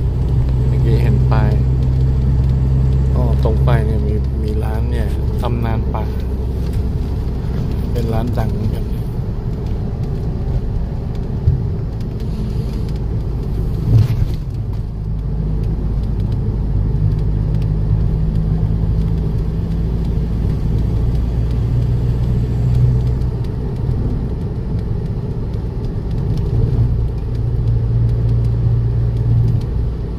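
Steady low engine and road hum inside a moving car's cabin, with a short knock about 14 seconds in.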